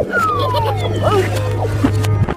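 Cartoon soundtrack: a steady low bass note is held under a high animal-like call that slides down in pitch during the first second, followed by a few short chirps.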